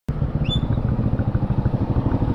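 Honda CB150R's single-cylinder engine running at low speed with a steady low putter as the bike rolls slowly. A brief high chirp sounds about half a second in.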